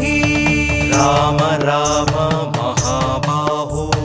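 Devotional Sanskrit hymn chanted in a melodic voice over a sustained drone and a steady percussion beat, with the sung line entering about a second in.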